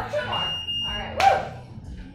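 Gym interval timer giving one steady, high electronic beep lasting under a second, marking the end of the timed work interval. It is followed by a short, loud vocal exclamation.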